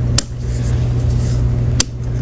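Two sharp metallic clicks about a second and a half apart, from the selector lever of a BAR 1918A2 fitted with a Swedish-pattern trigger housing being worked by hand. A steady low hum runs underneath.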